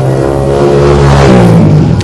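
Motorcycle engine running loud and close, its pitch rising as it revs up a little past a second in, then dropping back near the end.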